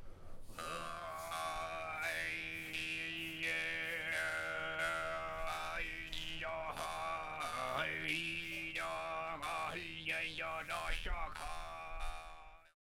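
Tuvan-style overtone singing by one man with a lot of pressure on the vocal folds: a steady low drone with a clear high overtone melody moving up and down above it.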